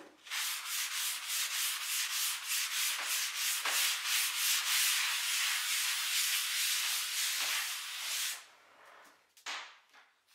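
Wet sponge rubbing back and forth across a chalkboard, wiping off chalk writing in quick strokes, about four a second, that stop about eight seconds in; one more short wipe follows near the end.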